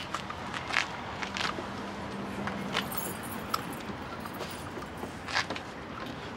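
Pressure-washer hose and its metal fittings being coiled and handled, giving scattered clicks and rattles. A faint low hum sits underneath.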